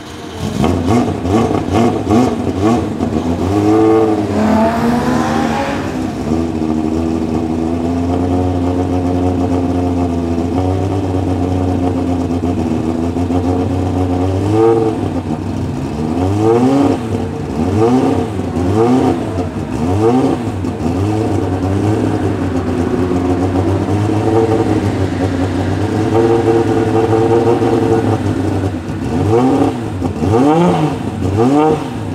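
BMW 3.0 CSL Group 2 race car's 3.2-litre straight-six running at a fast idle while warming up through its twin side exhausts. There is one rising rev about four seconds in, then a run of quick throttle blips in the middle and again near the end.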